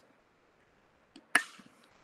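A single sharp click about one and a half seconds in, just after a fainter tick, over a quiet line.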